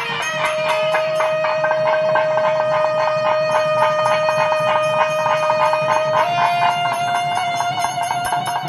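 Nadaswarams and saxophone holding one long high note over a fast, continuous thavil drum roll; about six seconds in the held note steps up a little.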